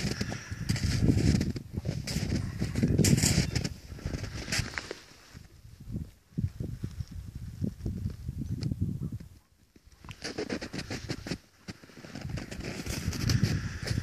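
Footsteps crunching through deep snow, uneven, with a couple of brief pauses around the middle.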